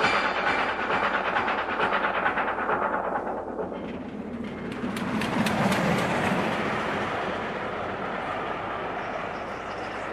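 Train running on rails, used as the song's closing sound effect: a regular clickety-clack of wheels over the rail joints that fades over the first few seconds, then a steady rushing noise of the moving train.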